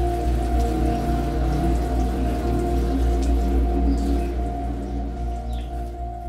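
Fine water spray pattering onto a bonsai's wet gravelly soil and pot, under soft background music of held tones; both fade down near the end.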